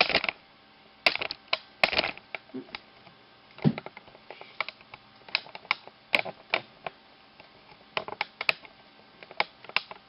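Bamboo double-pointed knitting needles clicking against each other as stitches are worked: short, sharp clicks at an uneven pace, a few a second. There are a few fuller handling knocks near the start as the camera is moved.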